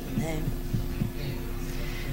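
A brief spoken word, then a pause filled with a steady low hum and room tone from the lecture's microphone system.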